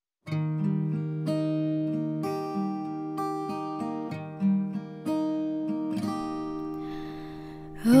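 Acoustic guitar playing a slow ballad intro, single picked notes ringing over a held low note, starting about a quarter second in after silence. Near the end a soft breath in from the singer, just before her voice enters.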